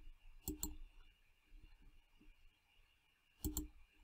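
Computer mouse clicking: a quick pair of sharp clicks about half a second in and another pair near the end, with a few faint taps between.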